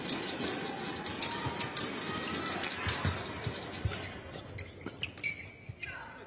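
Badminton rally: a string of sharp racket hits on the shuttlecock, roughly one every second, over the steady background din of an arena.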